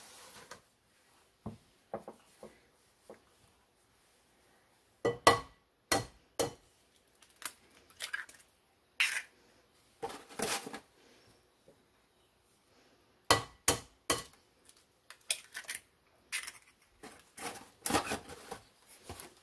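Eggs being cracked against a mixing bowl and dropped in, with short, sharp taps and clinks that come in small clusters with quiet gaps between them.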